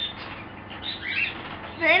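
Short, scattered bird chirps, with one louder curved call about a second in; a woman's voice starts near the end.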